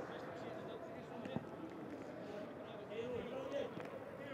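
Pitch-side sound of a football match in an almost empty stadium, with no crowd: faint shouts from players and a single sharp knock of the ball being struck about a second and a half in.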